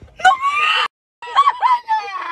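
Women screaming with excitement in high-pitched squeals, a joyful reaction to surprise news. The sound cuts out completely for a moment about a second in, then the squealing starts again.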